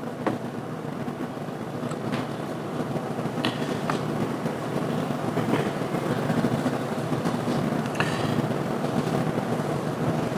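Steady low rumble of room noise, slowly growing louder, with a few faint sharp clicks scattered through it.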